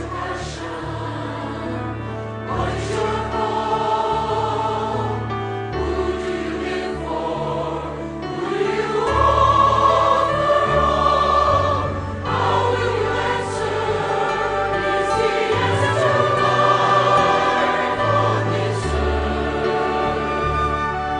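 Large mixed church choir singing a sustained anthem with orchestral accompaniment, held notes over a steady bass line, swelling louder about nine seconds in.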